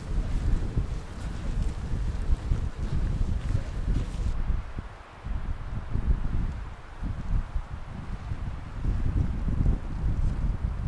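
Wind buffeting the microphone: a gusting low rumble that eases briefly about halfway through.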